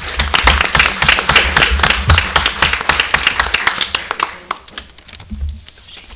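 Applause, many hands clapping, dying away about four to five seconds in.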